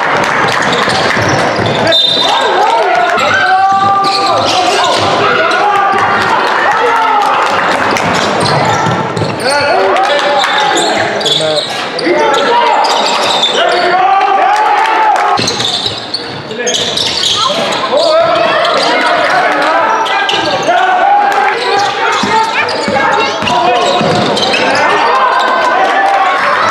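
Basketball game in a sports hall: the ball bouncing on the wooden court and voices calling out, echoing in the large room.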